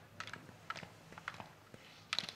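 Faint, short clacks and scrapes from a slalom skier going through the gates, in small clusters about every half second to second as she turns.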